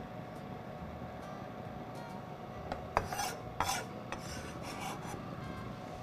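A kitchen knife scraping across a wooden cutting board, with a few short rasping strokes about three seconds in, over a faint steady hum.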